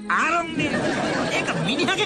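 Several voices talking over one another in a jumble of chatter.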